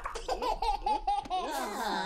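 High-pitched, cartoon-voiced giggling laughter: a quick run of short repeated laughs, then a gliding voice near the end.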